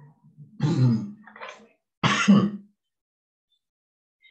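A man clearing his throat twice in quick succession, with a smaller rasp between the two.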